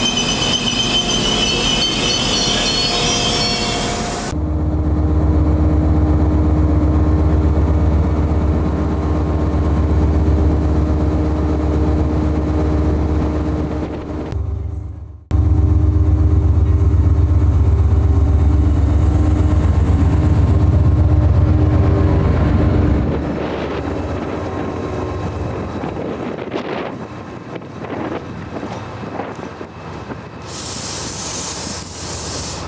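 A Class 68 diesel-electric locomotive, 68033, running with a loud, steady deep engine throb and a constant hum, in two stretches split by a brief break. Before it, a Transport for Wales Class 197 diesel unit moves along the platform with a high squeal, and near the end a quieter, more distant train sound follows.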